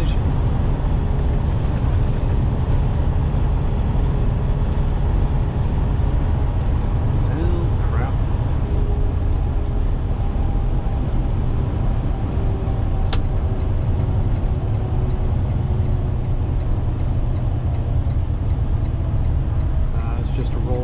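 Steady engine drone and road rumble heard inside a semi-truck's cab at highway cruising speed, with faint steady whining tones over the low rumble. A single sharp click comes a little past the middle.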